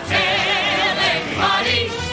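Ensemble of voices singing one long held note with vibrato, with musical accompaniment, in a stage-musical song number.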